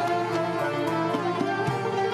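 Turkish traditional music played live by an instrumental ensemble, with ney (end-blown reed flute) holding long sustained notes over a moving lower accompaniment.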